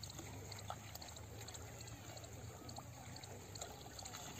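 Faint splashing and trickling of water as a metal pan scoops and tips water in a shallow muddy channel, with wading in the water.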